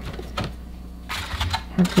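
A few light clicks and taps of eggs being handled, the shells knocking against a plastic food container and a foam egg carton, with a brief rustle about a second in.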